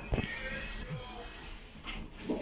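Passenger lift's sliding doors closing: a knock as they start moving, a steady high whine while they travel, and a click as they meet near the end.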